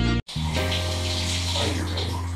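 Water spraying from a handheld shower head onto a person's head, a steady hiss, with background music under it. The audio cuts out sharply for a moment just after the start.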